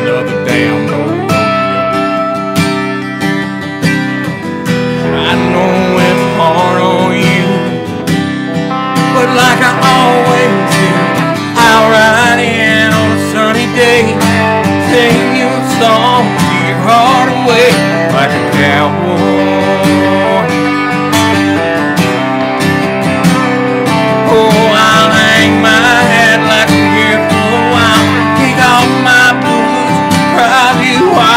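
Live country music on two guitars: an acoustic guitar strumming chords while an electric guitar plays lead lines, with held notes at first and then bending, wavering phrases from about a third of the way in.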